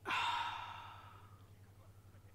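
A person's long sigh, starting sharply and fading away over about a second and a half.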